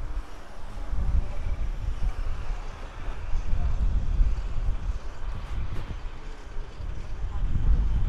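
Street traffic with motorcycles and cars passing close by, and wind rumbling on the microphone in gusts.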